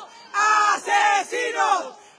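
A group of protesters chanting "¡Asesinos!" in unison, the word shouted once as four loud syllables.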